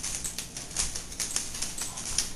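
Greyhound's toenails clicking on a hard kitchen floor as it walks, several uneven clicks a second.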